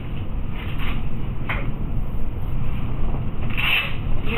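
Steady low background rumble, with faint rubbing and a couple of brief scuffs as hands press and smooth the fabric and straps of a back brace.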